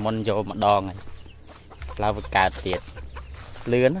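A man's voice calling out a short, drawn-out syllable, 'rau', again and again: one call at the start, another about two seconds in, and a third just before the end.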